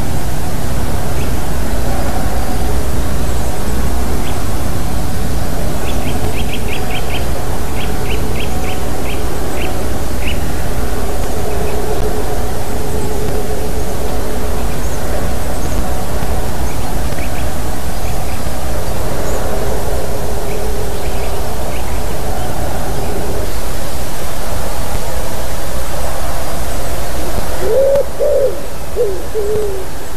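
Common wood pigeon cooing, faint under a steady hiss for most of the time, then loud and clear in the last two seconds or so. A small bird gives short runs of high chirps several seconds in.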